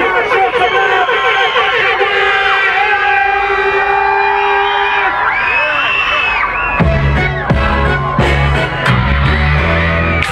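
Crowd of young fans screaming and cheering for a performer taking the stage, many high-pitched screams over one another. About seven seconds in, a music track with a heavy bass beat starts under the screams.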